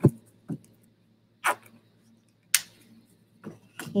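A plastic squeeze bottle of craft paint being squeezed out and handled: a few short, scattered clicks and squirts, the sharpest about two and a half seconds in.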